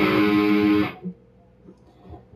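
Electric guitar strumming a two-note chord, the open A string against a fretted note on the D string. It rings for about a second and is then cut off abruptly, leaving quiet.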